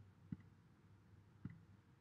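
Near silence with two faint, short clicks about a second apart, typical of a computer mouse being clicked.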